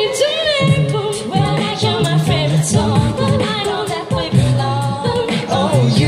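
A mixed six-voice a cappella group singing a pop song in harmony into microphones, amplified through stage speakers, with a low sung bass line pulsing in rhythm under the upper voices.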